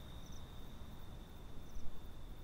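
Night-time cricket chorus: one steady, high, unbroken trill, with short higher chirps twice, about a second and a half apart, over a faint low rumble.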